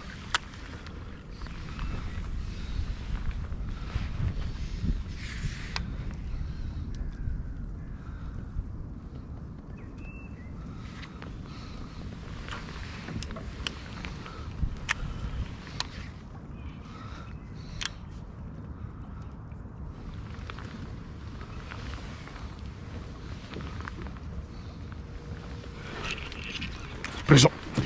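Low steady wind rumble on the action-camera microphone aboard a kayak, with scattered sharp clicks and knocks as the fishing rod and reel are handled during casting and retrieving.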